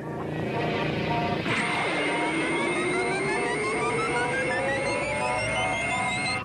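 Synthesized sci-fi sound effect of an animated power-amplifying machine starting up. A rush of noise swells, then about a second and a half in an electronic drone starts suddenly. Its pitch dips, then climbs slowly and steadily, under a steady high tone and repeated rising bleeps.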